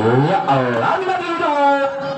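A man's commentary voice speaking in a sing-song delivery, drawing out one long held syllable near the end.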